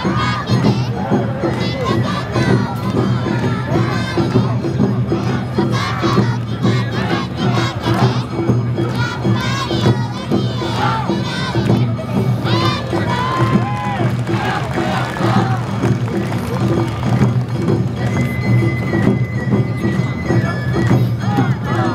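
Awa Odori dancers shouting rhythmic calls in chorus, many voices at once, over the troupe's accompanying festival music.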